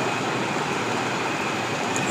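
Steady, even background hiss in a pause between words, with no distinct events.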